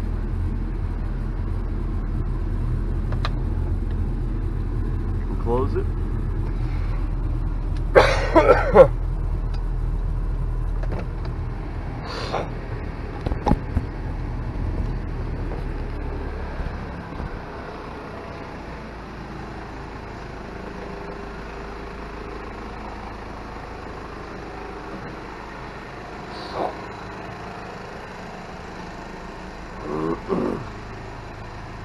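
The 1995 Toyota Land Cruiser Prado's 3-litre four-cylinder turbo diesel idles with a steady low hum, heard from inside the cabin. A loud short burst of knocks and rattles comes about eight seconds in, with a few smaller clicks after it. About sixteen seconds in, the engine hum drops noticeably quieter.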